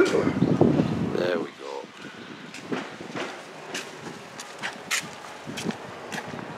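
Voices for about the first second and a half, then a quieter outdoor street background with scattered short clicks.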